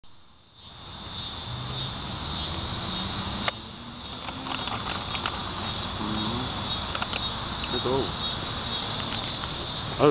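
Chorus of insects buzzing: a shrill, steady high drone that swells and fades slightly, starting about half a second in. A single sharp click comes about three and a half seconds in.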